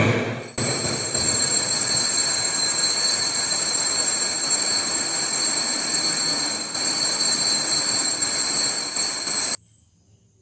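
Bells rung continuously at the elevation of the chalice during the consecration at Mass: a steady, high, metallic ringing that starts about half a second in and cuts off abruptly shortly before the end.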